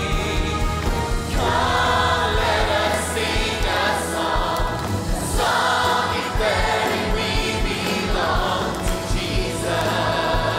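Multi-generational choir of children and adults singing an upbeat gospel song with lead vocalists and a band, over a steady drum beat.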